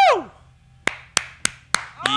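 A brief whoop that rises and falls in pitch, then one person clapping four times, about three claps a second.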